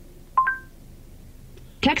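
Android Auto voice assistant's short two-note electronic chime, a lower note joined a moment later by a higher one, marking that it has stopped listening to the spoken command.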